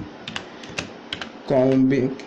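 Typing on a computer keyboard: a quick, uneven run of key clicks, with a short spoken word about one and a half seconds in.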